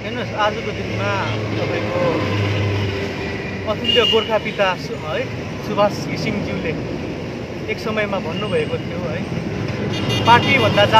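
A motor vehicle engine running steadily, with short snatches of voices over it.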